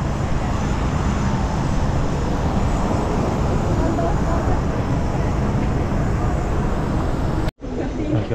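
Steady aircraft engine noise on an airport apron, with a faint high whine over the low roar. It breaks off abruptly near the end.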